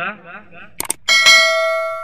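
Subscribe-button overlay sound effect: two quick mouse clicks, then a bell chime that rings and fades away over about a second and a half.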